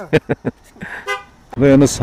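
A short vehicle horn toot about a second in, after a few sharp clicks, with a person's voice starting near the end.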